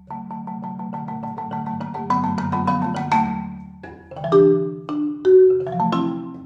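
Solo marimba played with mallets: a fast run of evenly repeated notes over ringing low bass notes, giving way after about two seconds to slower, louder single notes and chords that ring out.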